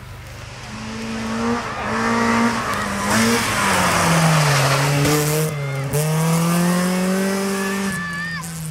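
Rally car engine revving hard on a gravel hill climb: it approaches with the pitch rising in short pulls between gear changes, passes close with a loud rush of engine, tyre and gravel noise, then pulls away with the pitch climbing again in a longer gear.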